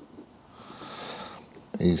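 A person sniffing, a soft breathy hiss lasting about a second, followed by a spoken word near the end.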